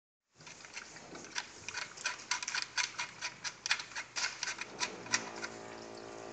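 Sharp, uneven clicking from a laser machine's handpiece, several clicks a second, then a steady hum sets in about five seconds in.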